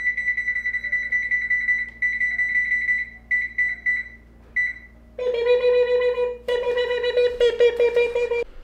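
Electronic oven control panel beeping in a high tone as its buttons are pressed: two long beeps, then a few short ones. From about five seconds in, a woman imitates the beeping with her voice in two long held tones.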